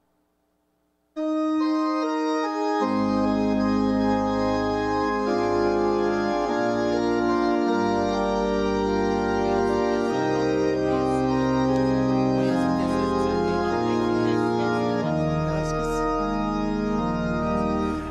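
Organ playing long held chords, starting about a second in, with a deep pedal bass joining a couple of seconds later. It is the introduction to a hymn.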